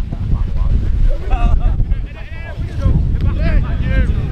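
Wind buffeting the microphone in a loud, gusty rumble, with shouts from footballers calling across the pitch at intervals.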